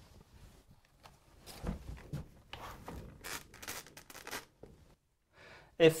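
Handling sounds of a roller blind being seated in its brackets: a run of irregular clicks and plastic rustles over a few seconds, then quiet.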